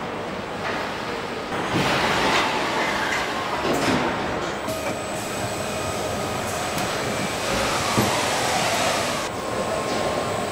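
Car assembly-line machinery at the body-and-chassis marriage station: automated carriers and fixtures running with a steady mechanical rumble and hiss, with a few sharp metal clanks.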